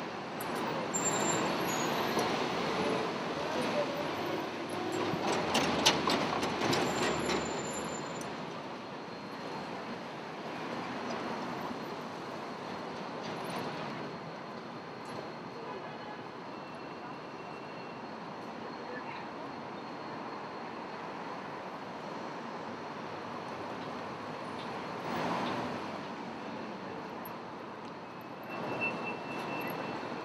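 City street traffic: the steady noise of vehicles passing through a busy intersection, louder over the first several seconds with a few sharp clatters, then settling to a lower, even traffic noise with a brief swell near the end.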